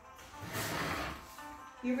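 Soft background music playing, with a roughly one-second burst of noise about half a second in, from something being handled out of sight. A woman's voice starts calling out near the end.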